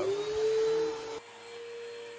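Upright vacuum cleaner running over carpet, its motor giving a steady whine that rises in pitch over the first half second as it spins up; the sound drops in loudness a little over a second in.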